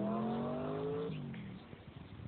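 An engine revving briefly, its pitch rising slowly, then dropping and fading out a little after a second in.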